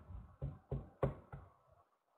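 A run of light knocks, about three a second, fading out after about a second and a half.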